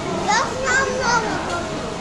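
A young child's high-pitched voice, a few short rising and falling calls during the first second or so, over the steady background noise of a busy restaurant.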